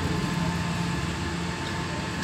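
Steady hum and hiss of a hall's sound system and room noise, with no voice.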